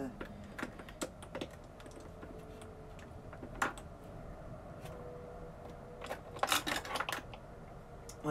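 Small makeup products and packaging clicking and clattering as a drawer is rummaged through: scattered light clicks and knocks, with a quick run of them about six seconds in.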